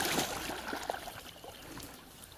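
Pond water splashing as a man wades in up to his waist, loudest at the start and dying away into small sloshes.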